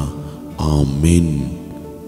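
A man's voice drawing out one long word about half a second in, over background music.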